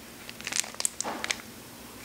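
Thin clear plastic wax-melt clamshell being handled and opened: a short cluster of light crinkles and clicks from about half a second to a second and a half in.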